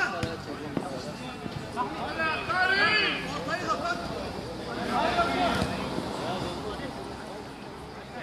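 Players shouting during a small-sided football match, with sharp thuds of the ball being kicked within the first second.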